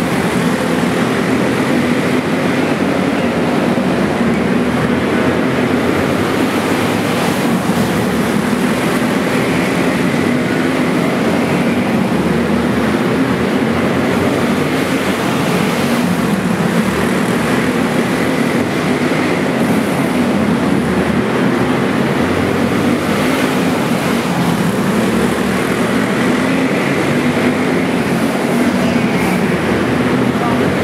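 Several racing kart engines running together in a steady, loud drone whose pitch wavers up and down as the karts lap the track, in an enclosed arena.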